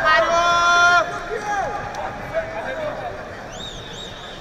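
A man's loud, drawn-out shout that cuts off about a second in, then the murmur of an arena crowd with scattered voices and a few high chirping sounds near the end.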